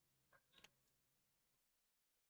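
Near silence: faint room tone with a couple of short faint clicks a little under a second in.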